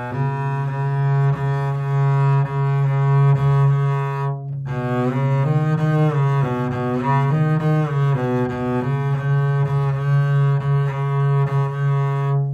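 Double bass played with the bow in long sustained notes, mostly on one low pitch, with a short break about four and a half seconds in and a few notes stepping up and down in the middle. It is the middle note of the three-note progressive scale played alone, the same pitch stopped with a different finger going up than coming down.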